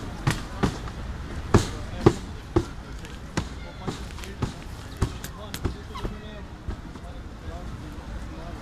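Footsteps on a hard marble floor: a run of sharp, uneven knocks at about walking pace, the loudest two near the 1.5 and 2 second marks, over a low murmur of distant voices.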